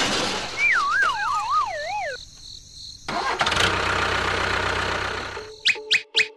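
Dubbed cartoon sound effects: a wavering whistle sliding down in pitch, then a toy-vehicle engine sound running steadily for a couple of seconds, ending in two quick rising squeaks.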